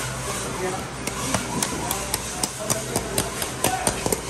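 Long knife cutting along a bluefin tuna's backbone and ribs, the blade ticking against bone in sharp, irregular clicks that come more often near the end, over a steady low hum.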